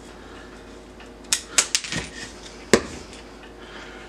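A handful of short, sharp clicks and knocks, about five spread over a second and a half in the middle, as the wooden bagel board with its tacked burlap is handled on a bamboo cutting board.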